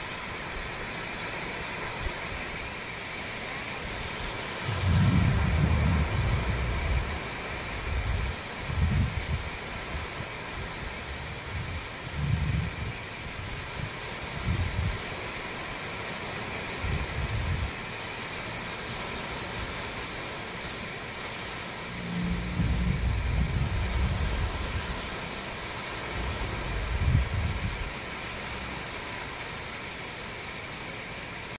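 Small sea waves washing onto the shore in a steady rush, with wind gusting against the microphone several times in low rumbling bursts.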